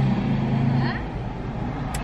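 A woman humming a long, level "mmm" that stops about a second in, over the steady low rumble of a car cabin.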